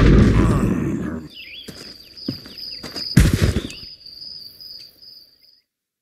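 A loud blast dies away over the first second. Then crickets chirr steadily, broken by a few sharp knocks, the loudest about three seconds in, and by short falling chirps. Everything stops shortly before the end.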